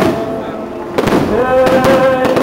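Festival skyrockets going off overhead: several sharp bangs, the loudest about a second in, over a held sung chant through loudspeakers.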